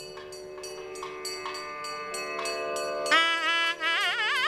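Carnatic temple music on nadaswaram: a steady drone of held notes with light clicks in an even beat, then about three seconds in a loud reedy nadaswaram line enters and winds into an ornamented, sliding melody.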